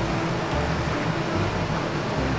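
Steady low rumble of urban street background noise, with no distinct events standing out.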